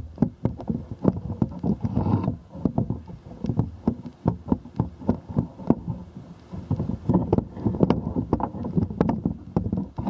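Dense, irregular clicking, knocking and rubbing: handling noise from a camera raised on a telescoping pole as it is swung over the roof.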